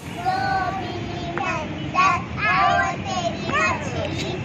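Young girls singing a chanted rhyme together in a circle game, in short phrases with a few held notes.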